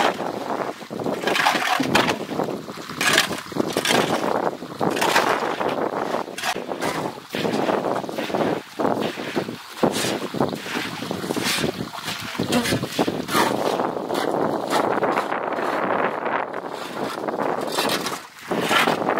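Water running across a wet concrete floor while a short hand broom is swept through it in repeated, irregular brushing and splashing strokes.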